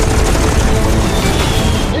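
F-14 Tomcat's 20 mm rotary cannon firing one long, continuous burst that cuts off at the end, with film music underneath.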